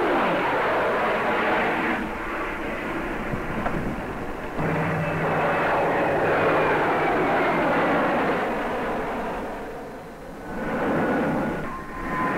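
Jet fighter flying past, its engine noise rising and falling in waves, with a sudden step in level about four and a half seconds in, a dip near ten seconds and a swell again just before the end.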